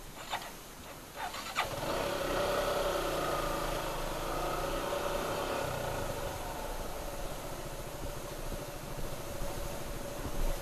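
Suzuki Gixxer SF motorcycle's single-cylinder engine coming in about a second and a half in after a few clicks, its pitch wavering for a few seconds, then running steadily at low speed.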